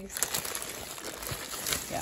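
Plastic zip-top freezer bags and a garbage bag crinkling and rustling as a hand shifts packaged meat around inside them.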